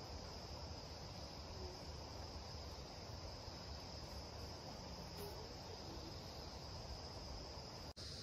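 Insects chirring steadily, a faint, high, unbroken drone with no pauses.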